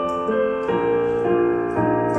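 Digital piano playing a pop melody over held chords, with a new bass note coming in about a third of the way through and another near the end.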